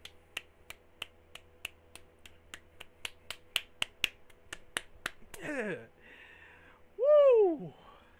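Rapid finger snapping, about three sharp snaps a second for some five seconds, then a man's voice calling out twice in wordless exclamations, the second near the end loud and swooping up then down in pitch.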